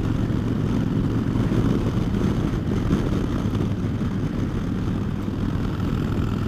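A 2009 Harley-Davidson Dyna Fat Bob's V-twin engine running steadily at cruising speed through Vance & Hines Short Shots exhaust, a low, even drone heard from the rider's seat.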